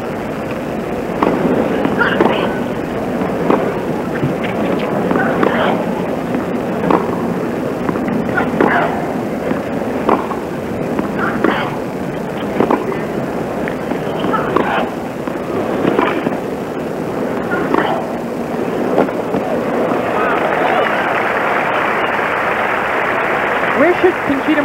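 Tennis rally heard on a TV broadcast: sharp racquet-on-ball strikes and bounces come about once a second over a low crowd murmur. A few seconds before the end, the crowd breaks into applause as the point finishes.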